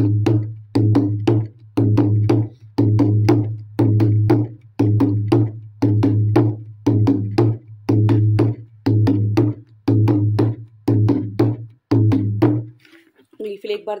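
Dholak played by hand in the bhangra rhythm: a repeating figure of a few quick strokes about once a second, each with a deep ringing bass boom under it, steady and even. It stops about a second before the end.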